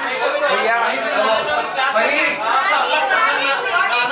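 Many people talking at once in a large hall: a steady babble of overlapping conversation with no single voice standing out.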